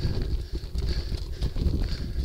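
Bicycle climbing a steep cobbled road, the bike and its mounted camera rattling continuously as the tyres run over the cobbles in a dense, irregular clatter.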